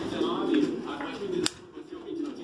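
Racing pigeons cooing in a loft, a low warbling coo, with one sharp click about a second and a half in.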